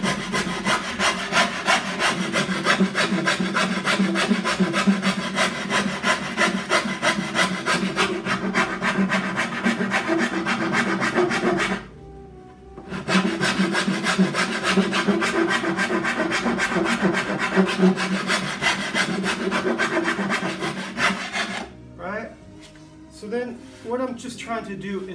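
Coarse file rasping along the edge of a flamed-maple cello back in quick, steady strokes, rough-shaping the overhanging edge down toward the ribs. The filing breaks off for about a second near the middle, resumes, then stops about two seconds before the end.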